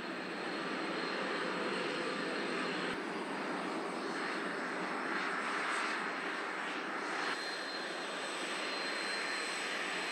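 Turbojet engines of NASA T-38 Talon jet trainers running as the jets taxi: a steady jet rush with a thin, high whine over it. The sound shifts about three seconds in and again about seven seconds in.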